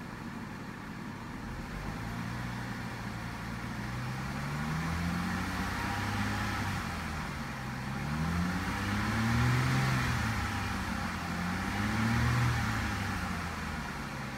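1997 Acura RL's 3.5-litre V6 engine revved about three times from idle, each rise and fall in pitch gradual and smooth, heard from inside the cabin.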